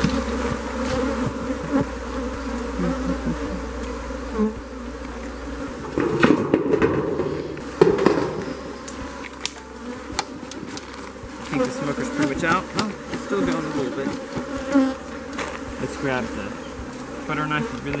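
Honeybees buzzing steadily around an open hive. In the middle come a few loud knocks and clatters as a corrugated metal roof sheet is set down on the wooden hive box.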